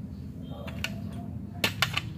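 Small metal hand tools clinking: a few light metallic clicks, some ringing briefly, then three sharp clicks in quick succession about a second and a half in.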